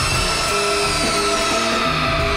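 A woman's long held scream into a studio microphone, sinking slowly in pitch, over soundtrack music with short repeated low notes.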